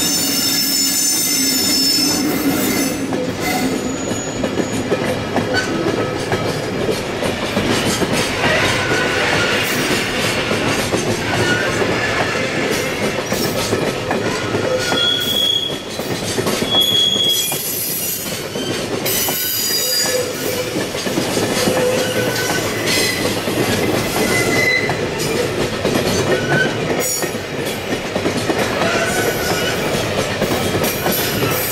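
Container freight wagons rolling past close by: steady wheel-on-rail noise, with brief wheel squeals coming and going and two short, high squeals about halfway through.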